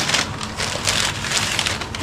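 Crumpled packing paper rustling and crackling as it is pulled and handled inside a plastic tote, in a dense, irregular run of crinkles.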